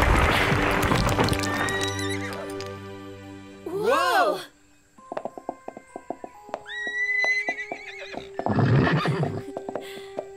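Cartoon sound effect of a boulder crumbling into rubble, loud at first and dying away over about three seconds under music. Then a short wavering whinny from a unicorn about four seconds in, followed by light music.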